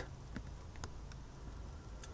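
A few faint, light clicks as a fingertip taps the on-screen keypad of an Android car stereo's touchscreen, over a low steady hum.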